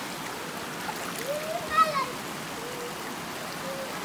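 Shallow river water rushing and splashing over rocks, a steady wash of sound. A person's voice is heard briefly about a second in, louder than the water.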